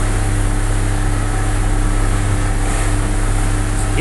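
Hewescraft Sea Runner aluminium boat under way, its engine running at a steady speed: an even drone with a constant low hum, heard from inside the hardtop cabin.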